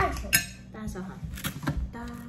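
Dishes and cutlery clinking on a table: several sharp clinks, the loudest about a third of a second in, with more near the end.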